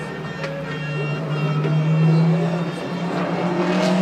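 Race car engines running as the cars come through the final corners of the circuit. The sound swells to its loudest about two seconds in and then holds.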